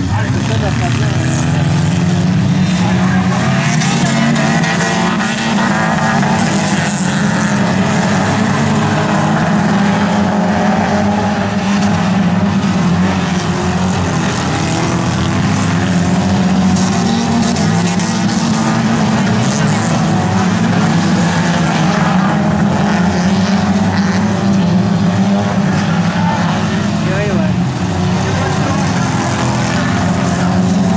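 Engines of several old stock cars revving and running hard without a break, their pitch rising and falling as the cars race around the track.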